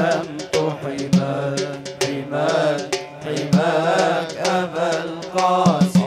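A male singer chanting a long, ornamented Arabic vocal line through a PA system, with the group's sustained drone beneath and sharp percussion hits roughly twice a second.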